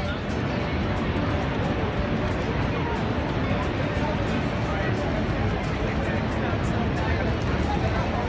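Steady rushing roar of the water at Niagara Falls, with the babble of a crowd of onlookers over it.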